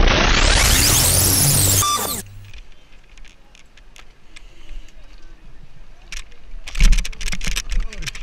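A short intro music sting with a rising whoosh, cut off about two seconds in. Then quieter outdoor ambience with scattered clicks and a loud burst of knocks and clicks about seven seconds in.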